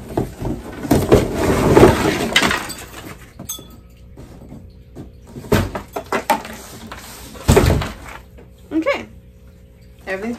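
Pieces of dry decorative wood, curly vine wood and manzanita branches, sliding and clattering out of a tipped-up cardboard box: a dense rattle for the first two to three seconds, then a few separate knocks as the last pieces drop out, the loudest about seven and a half seconds in.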